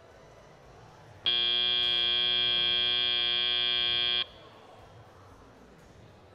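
FRC field end-of-match buzzer: one steady electronic buzz lasting about three seconds, starting about a second in and cutting off suddenly, signalling that the match is over.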